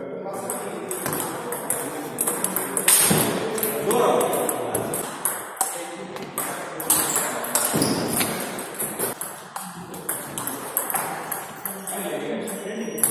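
Table tennis ball hit back and forth in a rally: a quick run of sharp clicks as the celluloid-type ball strikes the rackets and bounces on the table, with voices in the background.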